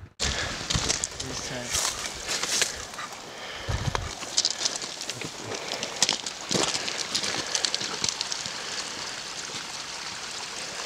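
Footsteps on a dirt trail: an irregular run of crunches and scuffs that starts suddenly after a moment of silence.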